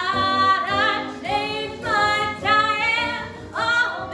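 A woman singing solo in a trained voice with strong vibrato, in sustained phrases separated by short breaks.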